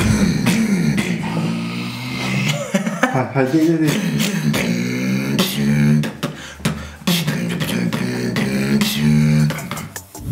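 A man beatboxing: sharp vocal-percussion hits over a hummed, pitched bass line, with a short break about seven seconds in.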